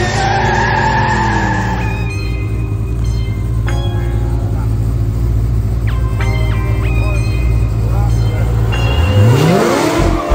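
Chevrolet Camaro ZL1's V8 idling with a steady low rumble, then revving up in a rising sweep about nine seconds in.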